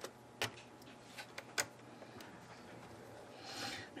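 Faint clicks and ticks of a small screwdriver and screws against an ASUS G53JW laptop's plastic chassis as screws are backed out: about six sharp clicks over the first two and a half seconds, then a soft rush of noise near the end.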